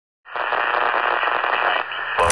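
Steady radio-style static hiss, thin and cut off above the highest tones as if heard through a small speaker, starting about a quarter second in, with a faint low hum underneath.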